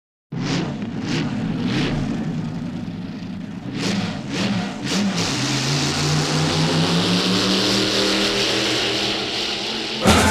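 Hot-rod drag-racing engine sound effect: a few short blips of the throttle, three and then three more, then the car pulls away with its engine note climbing steadily as it accelerates.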